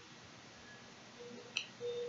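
Quiet room tone with one faint, short click about one and a half seconds in.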